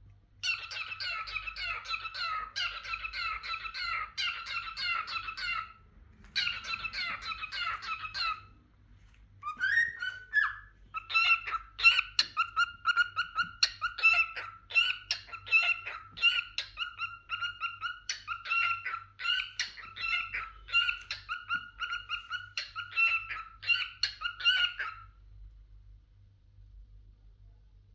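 Male cockatiel chattering and warbling in quick runs of notes. There is a short break about six seconds in, a pause around nine seconds, a brief rising whistle about ten seconds in, and then a long unbroken stretch of chatter that stops shortly before the end.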